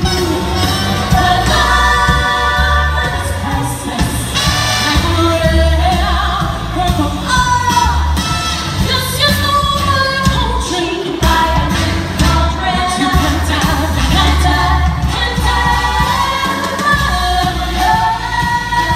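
A woman singing lead into a microphone, amplified through a PA, over loud band backing music with a pulsing bass line.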